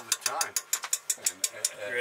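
Metal fork clinking and scraping against a stainless steel cooking pot in a fast run of light clicks, densest in the first second.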